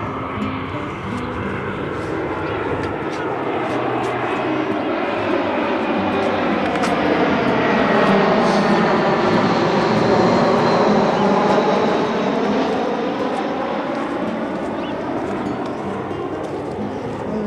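Jet aircraft passing low overhead. Its engine noise swells to a peak about halfway through, with a sweeping, shifting tone as it goes over, then begins to fade.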